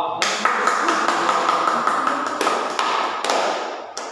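A group clapping, starting suddenly and dying away after about three and a half seconds.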